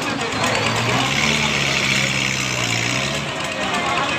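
Swinging-ship fairground ride's drive machinery running with a steady engine-like hum. The hum sets in about a second in and fades a little after three seconds, over a loud fairground din.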